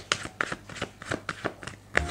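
A deck of tarot cards being shuffled by hand: a quick, irregular run of crisp card strokes, about four or five a second, with a sharper snap at the very end.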